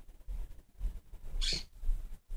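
Faint low thumping, with a short breathy hiss from the vocalist at the microphone about one and a half seconds in.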